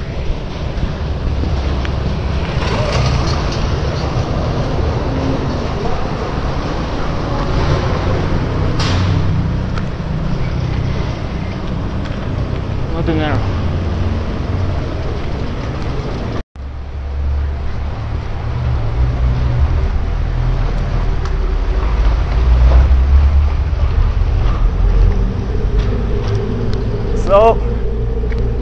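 Road traffic through a concrete underpass: vehicles passing close by with a steady low rumble. A brief sudden dropout a little past halfway.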